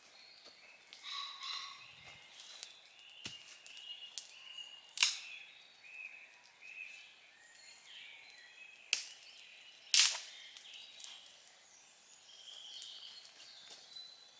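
Woodland songbirds chirping throughout, with a few sharp cracks of wood, the loudest about five and ten seconds in.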